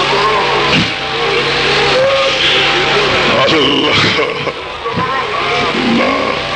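A man's voice over a public-address system, leading a supplication in drawn-out phrases, with a loud hissing noise behind it.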